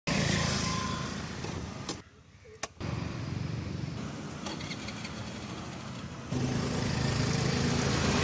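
Scooter engine and road sounds across quick cuts: engine running, then a brief near-quiet lull with a couple of sharp clicks about two seconds in, engine again, and from about six seconds on a louder, steady scooter engine with road traffic.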